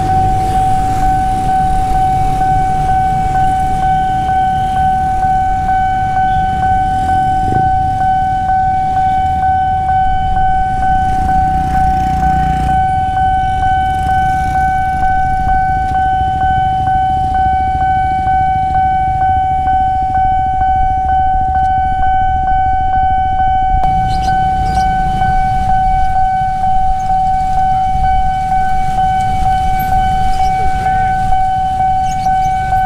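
Railway level-crossing warning alarm sounding one continuous, steady high tone, the signal that a train is approaching and the barriers are closing. Under it runs the rumble of road traffic, motorcycles and cars, waiting at the crossing.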